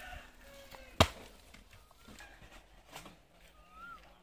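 A single sharp, loud impact about a second in, a hard blow or strike.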